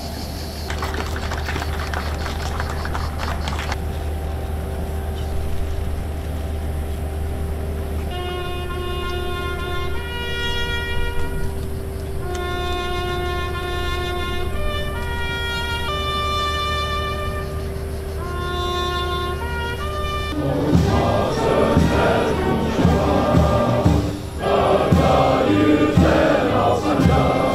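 Ceremonial brass music: a lone trumpet plays a slow call of long held notes, the customary accompaniment to a moment of silence in memory of the fallen. About twenty seconds in, a band strikes up with many voices singing.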